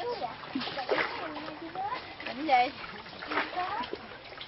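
People talking over water splashing around small wooden rowing boats in a canal, with a loud spoken "okay" about two and a half seconds in.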